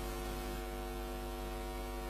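A steady electrical hum with a low buzz of many even overtones, unchanging throughout.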